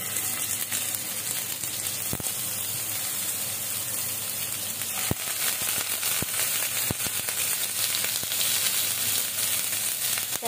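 Marinated fish fillets shallow-frying in hot oil in a nonstick pan: a steady sizzle, with a few sharp crackles of spitting oil.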